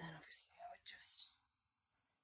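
A woman's soft whispering or muttering for about the first second, then near silence.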